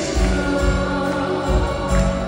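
Live band music with a woman singing, held notes over recurring deep bass pulses.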